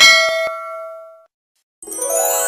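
A bell-like ding sound effect as the notification bell icon is clicked, ringing out and fading away over about a second. Near the end a bright chiming jingle begins.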